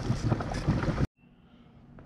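Rushing noise on the microphone, cut off abruptly about a second in, followed by near silence with only a faint low hum.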